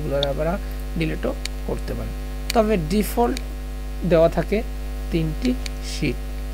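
Steady low electrical mains hum from the recording setup, running unbroken under short snatches of a man's voice.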